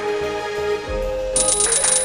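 Slot game audio: a background music melody plays through the reel spin. About two-thirds of the way in, a high, rapidly pulsing ringing chime sets in as the reels land on a small line win.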